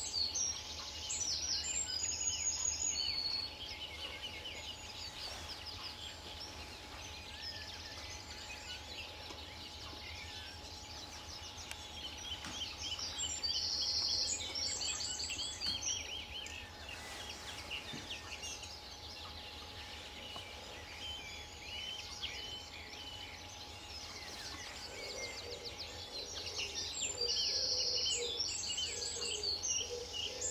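Common linnet singing: a fast, twittering song in phrases, loudest near the start, about midway and again near the end. A lower repeated call joins in over the last few seconds.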